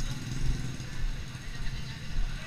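Low, uneven rumble of vehicle engines running at low speed on a street, with people's voices in the background.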